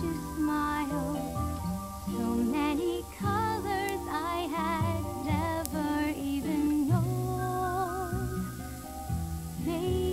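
A woman singing a melody with vibrato over instrumental accompaniment, a cartoon song played back from a VHS tape.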